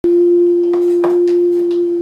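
A loud, steady pure tone held at one pitch throughout, with a few faint clicks.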